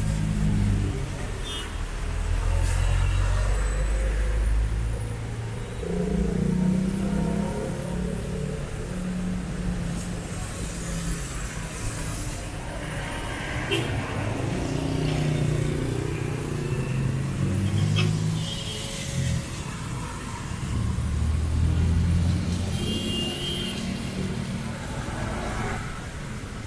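Traffic passing on a wet city street: vehicle engines rumbling past in swells every few seconds, with tyres hissing on the wet road.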